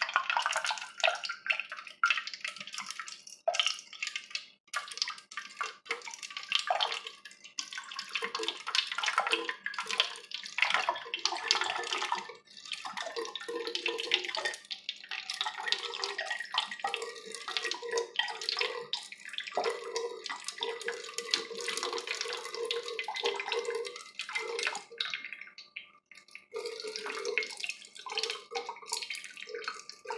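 A thin stream of water poured from a plastic water bottle into an open aluminium drink can, trickling and splashing unevenly throughout. A faint tone slowly rises in pitch through the second half.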